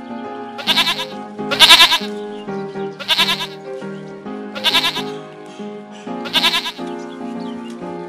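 Goat bleating five times, loud trembling bleats about a second and a half apart, the second the loudest, over steady background music.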